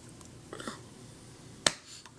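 Hands striking together once while signing: a single sharp, clap-like slap near the end. A softer rustle of hand movement comes about half a second in.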